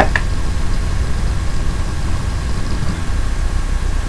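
Steady low hum with a faint hiss behind it, with no distinct sound events.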